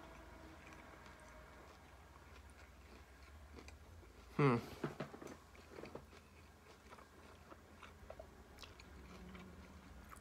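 Faint close-mouthed chewing of a hard-shell taco, with small scattered crunches. About four and a half seconds in there is a brief vocal sound from the chewer.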